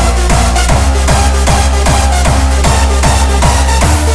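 Jumpstyle electronic dance track with a heavy kick drum on every beat, about two and a half beats a second, each kick falling in pitch, over a deep bass and held synth notes.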